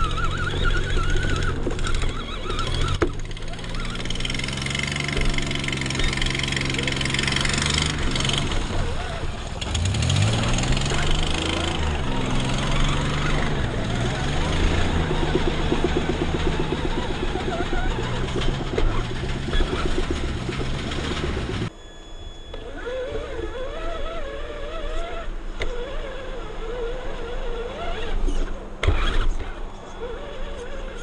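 Radio-controlled truck's motor and drivetrain running, its pitch rising and falling with the throttle, with tyre and body noise as it drives over mud and grass. The sound drops off abruptly about two-thirds of the way in, leaving quieter sounds with faint voices.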